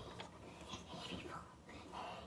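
A child whispering faintly right at the microphone.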